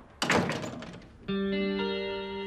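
A thud and rattle from a glass-paned wooden door pushed by hand, the loudest sound, dying away within a second. About a second later a plucked guitar music cue begins, several notes entering one after another and ringing on.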